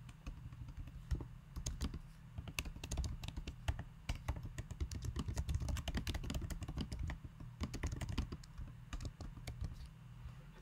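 Typing on a computer keyboard: a quick, uneven run of key clicks that goes on through nearly the whole stretch, over a low steady hum.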